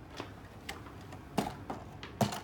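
A few light clicks and taps from boxed Hot Wheels cars in cardboard-and-plastic packaging being handled. The loudest tap comes about a second and a half in.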